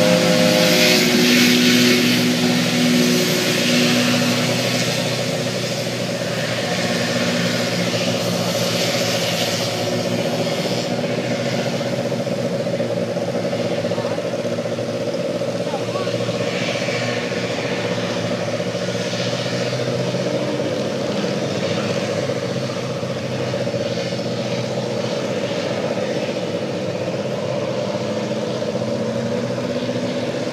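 Hovercraft engines and lift-thrust fans running on the river: a steady, pitched engine drone, loudest in the first few seconds as a craft passes close, then even. Near the end one engine's pitch rises.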